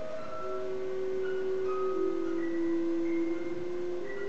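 Clarinet, violin and harp trio playing a slow contemporary chamber piece: two long held notes sound steadily underneath, the lower one stepping down about halfway through, while short high notes are scattered above them.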